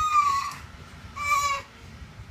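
A young child's high-pitched, drawn-out whining cry that trails off about half a second in, followed by a shorter second whine about a second later.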